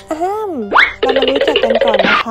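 Cartoon-style comedy sound effects: a sliding, wavering pitched sound, then a fast upward sweep a little under a second in, then a rapid fluttering run of short pitched notes.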